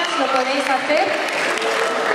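An audience applauding, with a young man's voice speaking over the clapping.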